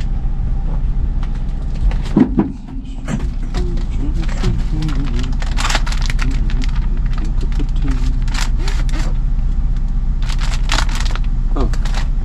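Plastic packaging crinkling and crackling in short bursts as it is unwrapped by hand, thickest in the second half, over a steady low hum of an idling boat engine.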